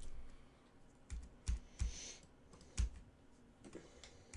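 A handful of separate sharp clicks or taps, about five spread between one and three seconds in, with a short soft hiss near the two-second mark.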